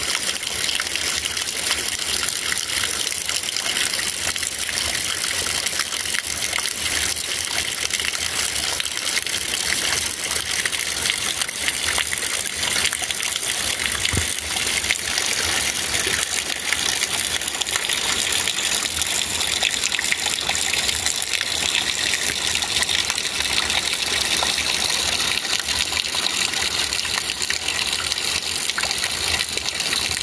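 Heavy rain falling steadily, an even rushing hiss with no breaks.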